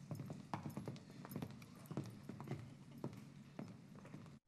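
Faint, irregular footsteps and light knocks on a hard stage floor as several people walk to their chairs, over a steady low hum.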